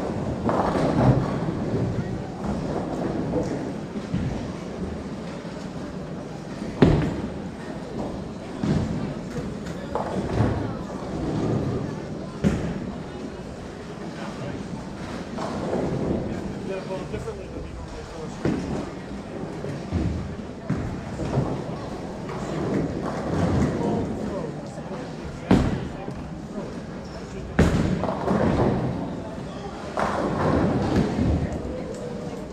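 Bowling alley din: indistinct chatter of bowlers under the sound of balls rolling, broken by four sharp knocks of bowling balls striking pins or being set down, the loudest about seven seconds in and two close together near the end.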